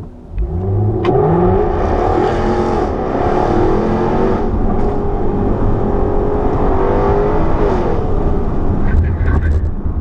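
Racing car engines revving and accelerating, with voices mixed in. Engine pitch rises sharply about half a second in.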